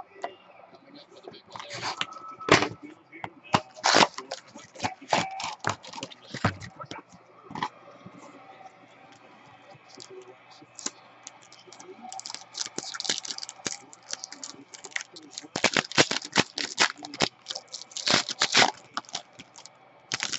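Trading-card packs handled by hand: a foil wrapper torn open and crinkled, then cards slid and shuffled, heard as a string of sharp crackles and rustles, busiest about two seconds in, around four to seven seconds, and again from about twelve to nineteen seconds.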